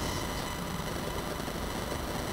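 Steady room noise: an even hiss over a low hum, with a few faint steady high tones.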